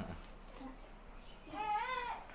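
A baby's short cry near the end, rising in pitch.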